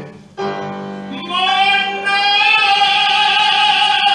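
Live music: a solo singer at a microphone breaks off briefly, then holds a long, loud note with vibrato from about a second in, over a steady held accompaniment.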